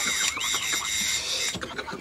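Electric doorbell ringing, one steady high-pitched tone held down that stops about one and a half seconds in.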